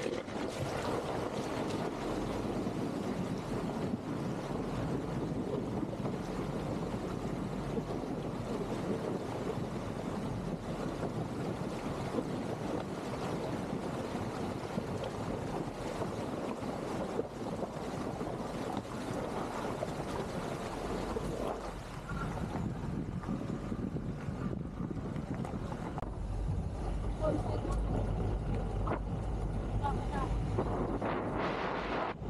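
Shallow river water splashing and rushing around an SUV's tyres as it fords a rocky riverbed, with wind on the microphone. Near the end the water sound fades and a low rumble of the vehicle on a paved road takes over.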